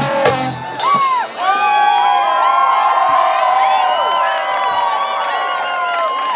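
Live cumbia band with percussion and bass playing its last beats, cutting off about a second in, followed by a crowd cheering and whooping loudly.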